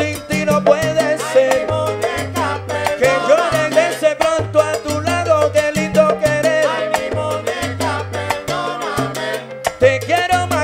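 A live salsa band playing, with a stepping bass line under congas and timbales and melodic lines on top.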